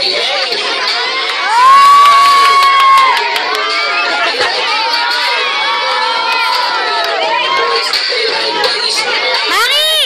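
A crowd of children shouting and cheering, many high voices over one another. One loud held shout rises about a second and a half in and lasts over a second, and a sharp rising squeal comes near the end.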